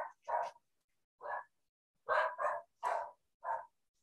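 A small dog barking in the background: about six short, sharp barks spread unevenly across the few seconds, two of them close together near the middle.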